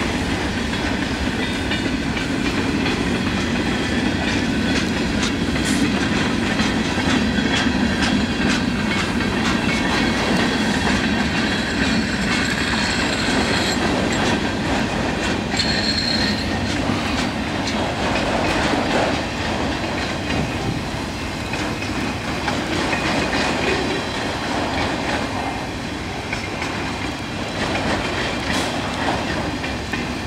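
Freight train of autorack cars rolling steadily past, steel wheels clicking over the rail joints in a continuous rumble, with a brief high-pitched wheel squeal about halfway through.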